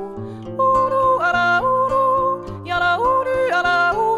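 A woman yodelling a wordless melody, her voice flipping between low and high registers in sudden leaps, over an acoustic guitar accompaniment.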